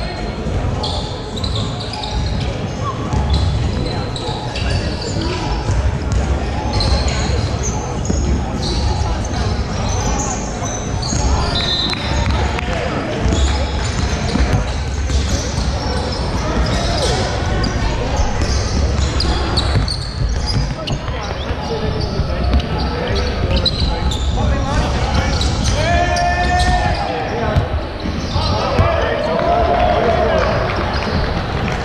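Live basketball play on a hardwood court in a large, echoing hall: the ball bouncing as it is dribbled, amid players' indistinct shouts and calls, with one drawn-out call about 26 seconds in.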